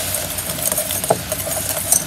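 Wire whisk beating rapidly in a glass bowl, its wires clicking and scraping against the glass as cocoa powder is mixed into a melted liquid, over a steady hum.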